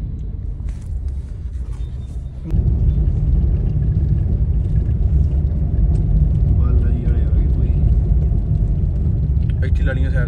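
Steady low rumble of a small car's engine and tyres heard from inside the cabin while driving, stepping up markedly louder about two and a half seconds in and then holding steady.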